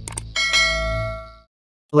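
Two quick clicks, then a bright bell-like ding that rings for about a second and cuts off, over a low music bed: a subscribe-button and notification-bell sound effect.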